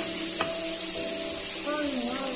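Shredded vegetables frying in oil in a stainless steel pot, sizzling steadily while a wooden spoon stirs them, with one short knock about half a second in.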